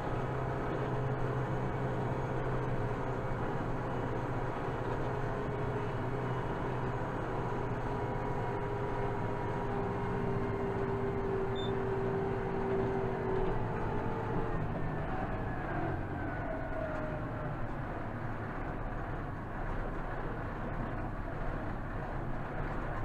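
Kubota M7060 tractor's four-cylinder diesel engine running steadily under way, heard from inside the cab. A faint higher whine rides over the drone and fades out a little past halfway.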